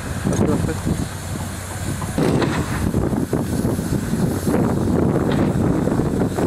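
Construction-site noise: indistinct voices in the background over a steady low machine hum, getting busier about two seconds in.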